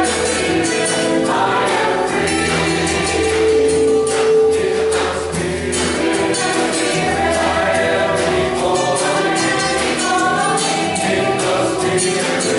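Mixed choir singing a gospel song in several-part harmony, over a steady beat of light percussion.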